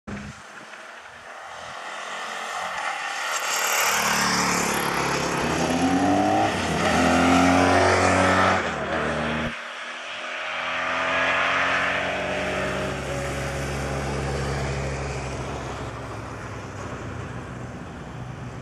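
Motor vehicle engines passing on the road: an engine note builds up, is loudest just past the middle with its pitch sliding down as it goes by, then breaks off suddenly; a second engine follows, swelling and then slowly falling in pitch as it fades.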